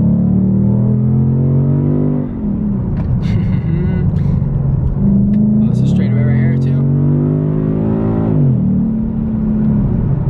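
Car engine heard from inside the cabin, pulled hard at full throttle in second gear. The revs climb for about two seconds and fall away sharply. After a steadier stretch they climb again for about two and a half seconds and fall away once more.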